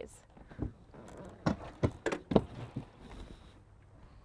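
A few light knocks and clicks, scattered over about two seconds: a motorcycle's front wheel rolling into a steel wheel chock's cradle and settling on its plywood base.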